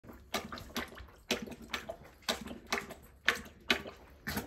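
Dog lapping water from a ceramic bowl, a wet slap with each lap, about two laps a second.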